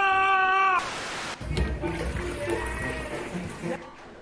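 A young elephant seal's long, steady-pitched wail, which cuts off a little under a second in; then a burst of hiss and about two and a half seconds of low, noisy rumble.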